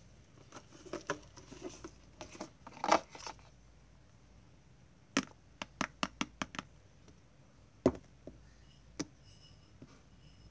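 Plastic clicks and taps of a small container being worked open by hand: scattered soft clicks, then a quick run of about seven sharp clicks around the middle, and two louder single knocks near the end.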